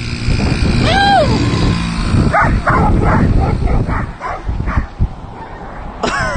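Several dogs barking and yipping: one high call about a second in, then a quick run of short yaps, over a steady low rumble.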